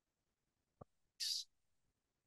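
A quiet pause with a faint single click a little under a second in, then a brief soft hiss, like a short breath, just after.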